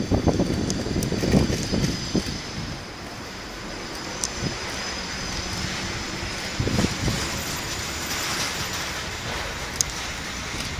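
Bicycle riding noise: a steady rumble with knocks and rattles from the bike in the first two seconds and again about seven seconds in.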